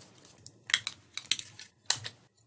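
Hard plastic Nerf Barricade blaster parts clicking and knocking against each other as they are handled: about five short clicks, the sharpest near the end.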